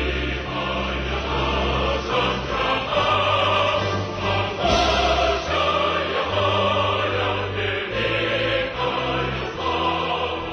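Background music: a choir singing over low held bass notes that change about once a second.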